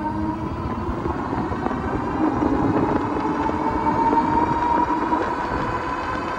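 Electric fat-tire e-bike under full throttle, its hub motor whining with a pitch that rises slowly as the bike accelerates, over a low rush of wind on the microphone.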